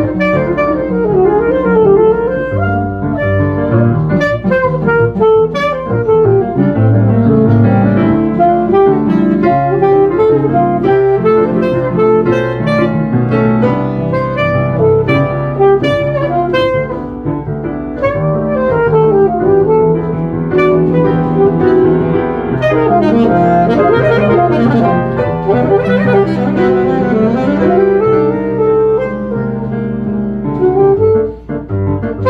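Saxophone playing a flowing melody over grand piano accompaniment in a live duet.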